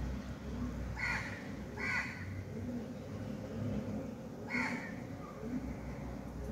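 Three short bird calls, about a second in, near two seconds, and a little past four and a half seconds, over a steady low hum.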